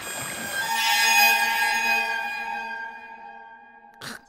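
A long, held horn-like chord of many steady tones. It comes in under a second in after a short wash of noise, swells, and then slowly fades away.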